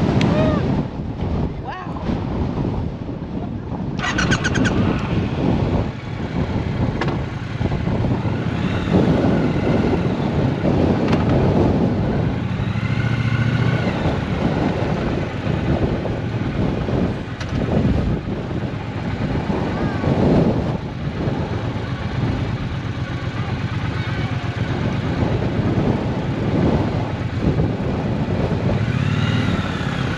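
Triumph Bonneville T120 parallel-twin engine running at low revs as the motorcycle creeps across a parking lot, with strong wind buffeting the microphone.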